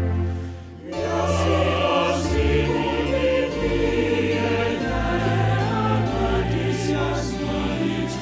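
A choir singing a solemn hymn in Twi in harmony, breaking off briefly just under a second in and then going on with the next phrase.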